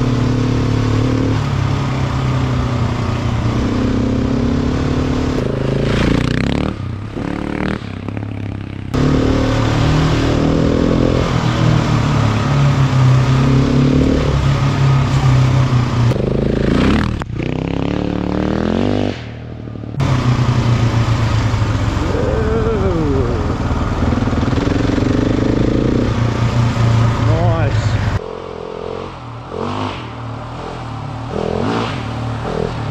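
Husqvarna 701 Enduro's single-cylinder four-stroke engine running under load as the bike is ridden on a rough dirt track, its revs rising and falling with the throttle and gear changes. There are several brief dips in the engine note, and the sound drops away near the end.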